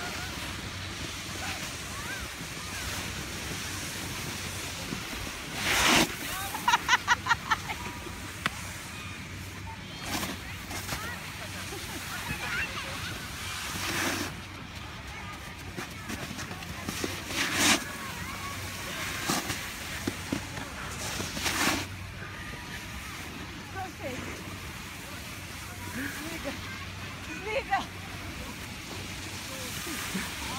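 Snowboard sliding and scraping over packed snow, with wind on the microphone: a steady hiss broken by several louder rushing scrapes, the loudest about six seconds in. Just after it comes a quick run of short voice sounds, and faint voices carry on behind.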